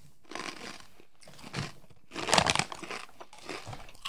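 Snack packet crinkling and crunching close to the microphone, loudest a little after two seconds in.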